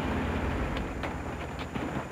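A Cadillac convertible's engine and road rumble, a steady low drone that eases slightly as the car slows to a stop.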